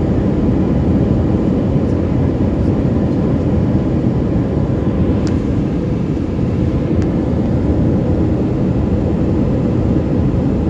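Airliner cabin noise heard from a window seat over the wing: a steady, dense low rumble of jet engines and airflow during the landing approach with flaps extended. Two faint short ticks come about five and seven seconds in.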